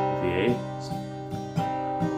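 Steel-string acoustic guitar with a capo on the third fret being strummed: a firm strum on an A minor chord shape rings on, followed by lighter strums about every half second.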